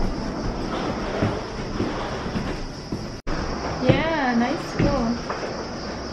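Suitcase wheels rolling with footsteps along a hard corridor floor. After a brief break, a person's voice, wordless and swooping up and down in pitch, is heard around the middle.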